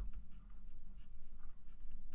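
A stylus scratching in short, irregular strokes on a drawing tablet as a word is handwritten, over a steady low hum.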